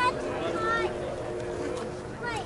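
Scattered voices calling across a softball field over a steady motor hum.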